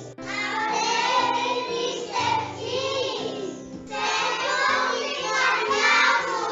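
A children's song: a group of children singing over a keyboard-style backing of held notes.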